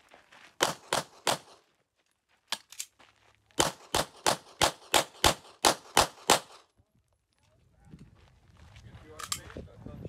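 A string of pistol shots in a practical-shooting course of fire. Three quick shots come about half a second in, then a pair near the three-second mark, then a fast run of about nine shots at roughly three a second. After that there is only a low rumble and small handling clicks.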